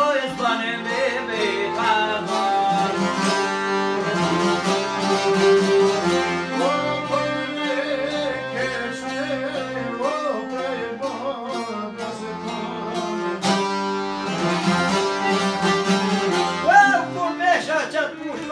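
Albanian folk ensemble playing: long-necked lutes and a bowl-backed lute strummed and plucked together with a violin and an accordion, in a continuous instrumental passage with a wavering melody line.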